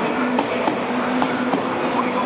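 JR West 103 series electric train rolling slowly along a platform: steady running noise with a low hum and scattered sharp clicks.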